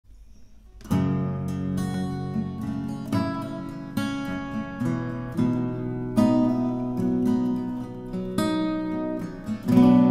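Acoustic guitar playing an instrumental intro, starting with a struck chord about a second in and moving through a run of changing chords.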